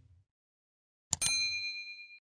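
Subscribe-bell notification sound effect: a sharp click about a second in, then a single bright ding that rings on with a few clear tones and fades away.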